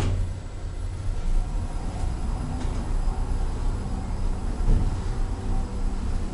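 An Otis Gen2 elevator car travelling down: a thud right at the start, then a steady low rumble as the car moves.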